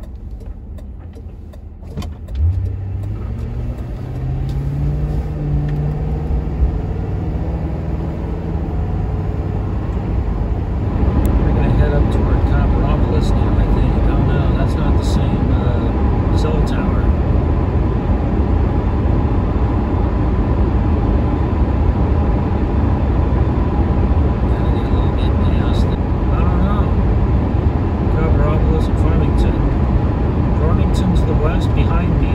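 Ford Crown Victoria's V8 pulling away from a stop, heard from inside the cabin, its pitch rising for a few seconds as the car accelerates. From about ten seconds in, a louder, steady rush of tyre and road noise on wet pavement takes over at cruising speed.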